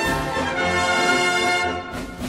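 Czech brass band (dechovka) playing an instrumental passage, brass carrying the tune over a stepping bass line.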